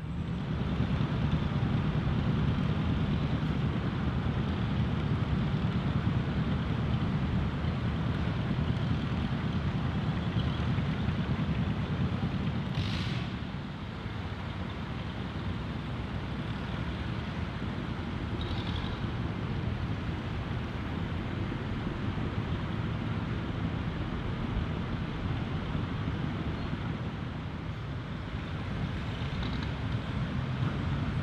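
Distant old tractor engines running, a steady low rumble under outdoor ambience, with a brief hiss about 13 seconds in.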